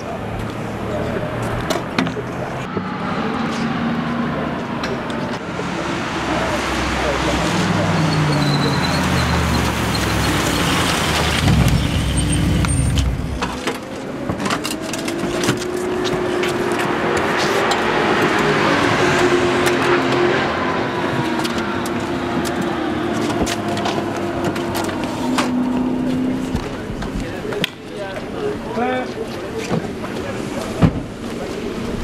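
Race car engines running in the pit lane, rising and falling in pitch as they rev and pass, with a long steady engine note in the middle, amid people's voices.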